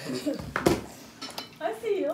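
A metal spoon clinking against a dish while a baby is spoon-fed, with a few sharp clinks about half a second in and again shortly before the end.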